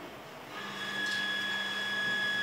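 A machine's steady hum and high whine start about half a second in.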